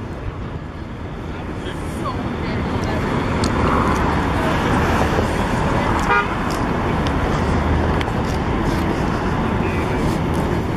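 Downtown street ambience: steady traffic noise and the murmur of passers-by's voices, growing louder over the first few seconds. About six seconds in there is a short, rapidly pulsed tone.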